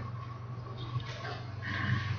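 A low, steady electrical-sounding hum, with a faint, brief high whine about a second and a half in.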